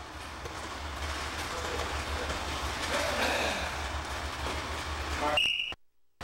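Steady practice-room noise from a wrestling session, with scuffling on the mats and indistinct voices over a low hum. Near the end a short high tone sounds, then the sound cuts out in stutters.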